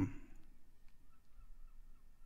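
Quiet room tone with a few faint clicks of fingers tapping an iPad touchscreen, and a faint wavering high tone in the second half; the Quanta synth meant to play isn't heard.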